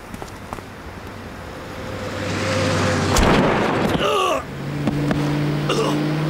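Audio-drama sound effect of a truck's engine swelling as it speeds closer, with a thud about three seconds in as it runs a man down and a short falling cry just after. A low steady musical drone comes in near the end.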